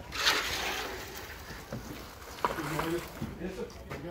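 A brief noisy rush in the first second or so, then several voices of a work crew calling out in the background, with one sharp click partway through.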